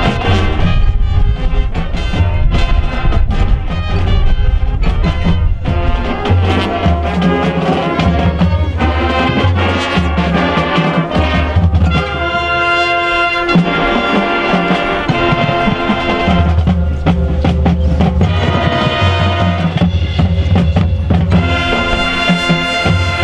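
Marching band playing live: brass chords over a low brass bass line with drums. About twelve seconds in, the band holds a sustained chord while the bass drops out.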